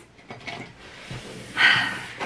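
A woman's breathy sigh about one and a half seconds in, after a few faint handling knocks.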